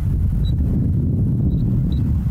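Steady low outdoor rumble with no clear source. A few faint, very short high beeps come about half a second in, at a second and a half, and near the end.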